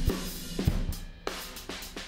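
A drum kit recording playing in a steady beat of kick, snare and cymbal hits, run through the original Airwindows Baxandall tilt EQ plugin with its treble boosted a lot.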